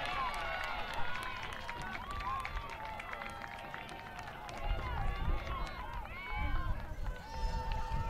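Many overlapping voices shouting and cheering on an outdoor field after a goal, with scattered sharp clicks. A few low rumbles come in during the second half.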